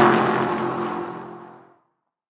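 Intro sound effect for a logo animation: a whoosh at full strength as it opens, with tones falling in pitch at its peak, then a few held tones fading out near the end.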